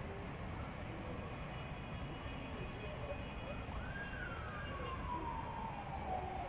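Steady distant city traffic noise, with a faraway siren in the second half that rises quickly and then falls slowly over a couple of seconds.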